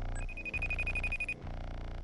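A phone ringing with an electronic ringtone: one steady high tone about a second long, over low bass music.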